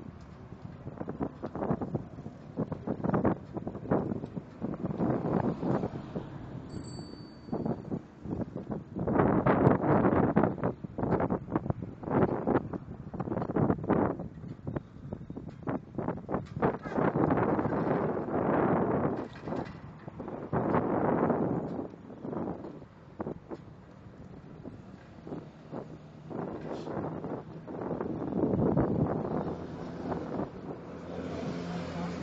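Wind buffeting the microphone of a phone filming from a moving bicycle, coming in irregular gusts that swell and fade.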